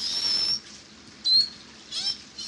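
Beluga whale whistles: a high, thin whistle held for about half a second, then a shorter one gliding down in pitch about a second later.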